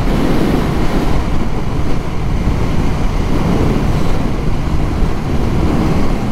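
Wind rushing over the microphone of a motorcycle rider at road speed, with road and engine noise from the moving bike underneath, steady throughout.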